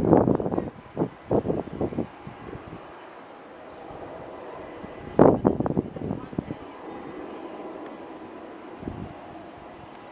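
Distant Boeing 737-800's CFM56 jet engines running steadily at low power as the airliner turns on the runway. Voices break in briefly at the start and again about five seconds in, louder than the engines.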